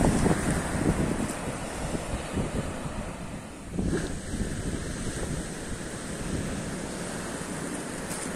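Surf breaking and washing up a sand beach, with wind rumbling on the microphone. The wash swells and eases, dipping briefly about halfway through before rising again.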